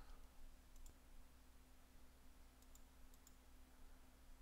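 Near silence, with a few faint computer mouse clicks about a second in and again near the end, over a faint steady hum.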